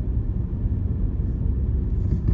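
A car being driven, heard from inside the cabin: a steady low rumble.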